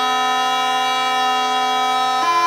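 Bagpipe playing one long held chanter note over its steady drone.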